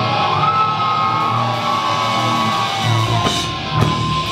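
Heavy metal band playing live: distorted electric guitar holding long notes with pitch bends, with drum hits coming in near the end.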